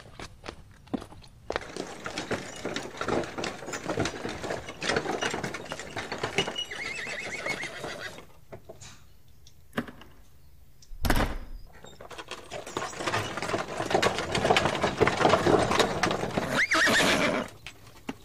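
Horse-drawn cab: hooves clip-clopping with a clattering rattle, broken by a lull and a single heavy thump about two-thirds through. The clatter returns, and a horse whinnies near the end.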